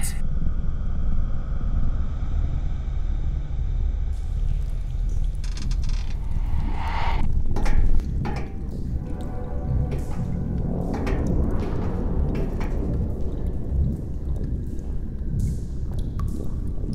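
Dark film soundtrack: a loud, deep, steady rumble, with sharp hits and a swooshing sweep laid over it. The level drops suddenly about halfway through.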